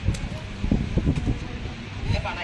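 Wind buffeting the microphone in a low, uneven rumble, with people in a crowd talking faintly.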